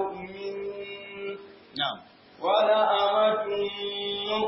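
A man's voice chanting Quranic recitation in melodic tajwid style. A long held note tapers off through the first half, a brief sharp sound comes just after, and a new sung phrase begins a little past halfway.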